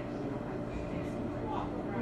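Indistinct background voices in a restaurant dining room, over a steady low hum.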